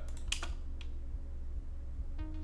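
Computer keyboard key clicks: one sharp click shortly after the start and a fainter one a moment later, over a low steady hum.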